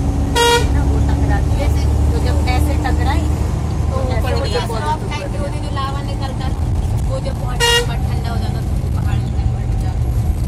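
Bus engine running with a steady low drone, and two short horn toots, one about half a second in and one near the eight-second mark.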